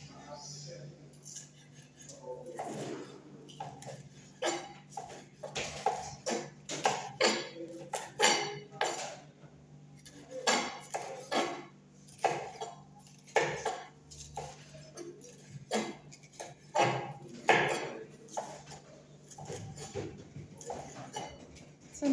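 Kitchen knife chopping green bell pepper on a wooden chopping board: repeated irregular knocks of the blade on the board. A low steady hum runs underneath.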